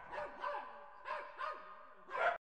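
A dog barking repeatedly, a quick series of short barks, fairly quiet.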